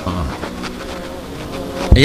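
A steady buzzing hum with a short low thump near the end.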